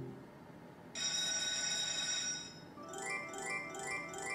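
Electronic slot machine win sounds from a Merkur Lucky Pharao machine. About a second in, a bright ringing chime sounds for about a second and a half. It is followed by a run of short rising chime figures, about three a second, as a line win is tallied.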